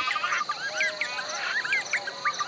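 Birds calling in many short rising-and-falling chirps over a steady, high insect drone, with a fast, even pulsing call running through it: a dawn chorus of birds and insects.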